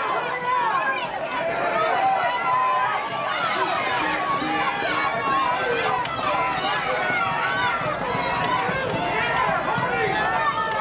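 Many voices calling and talking over one another from players and spectators at an outdoor soccer game, with no single voice clear.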